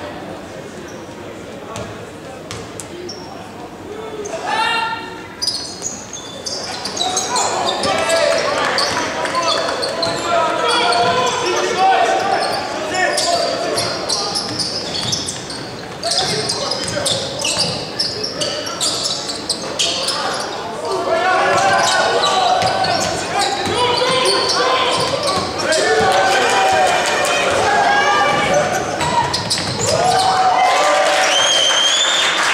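Basketball game in a large echoing gym: a basketball bouncing on the hardwood court, with players and spectators shouting. Quieter for the first few seconds, then louder and busier as play picks up.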